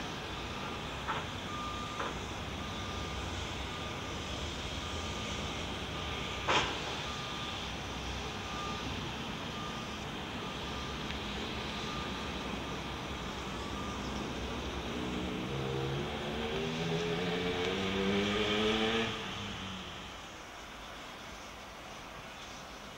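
Heavy construction machinery running, with a back-up alarm beeping about once a second and a few sharp knocks, the loudest about six and a half seconds in. Near the end a diesel engine revs up, its pitch rising for a few seconds, then drops away suddenly.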